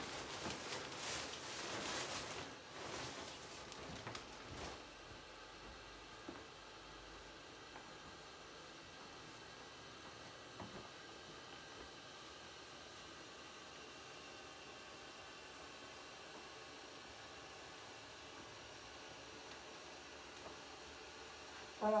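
Nylon fabric of an inflatable lawn decoration rustling as it is handled for the first few seconds, then the decoration's small, cheap built-in blower fan running faintly and steadily as the ghost slowly inflates.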